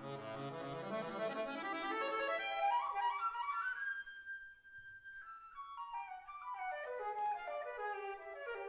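A klezmer trio of flute, violin and accordion playing live. A fast run of notes climbs to a high note held for about a second, about four seconds in, and stepwise descending runs follow.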